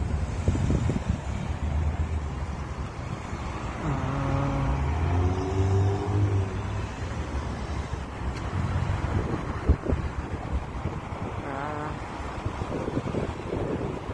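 City road traffic with cars passing, mixed with wind rumbling and buffeting on the phone's microphone.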